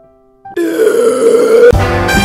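A loud, drawn-out burp from a drunk cartoon Santa, starting about half a second in and lasting about a second. Brassy swing music starts just before the end.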